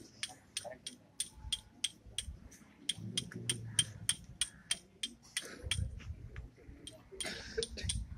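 A rapid, fairly even run of light, sharp metallic clicks, about four or five a second, thinning out near the end, with a low rumble now and then underneath.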